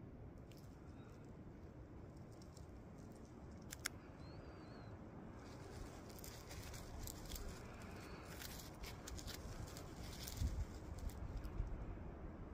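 Faint handling noise: a gloved hand rustling and shifting a chunk of sulphide ore, with small scratchy clicks that become more frequent after about five seconds. A brief faint high chirp comes about four seconds in.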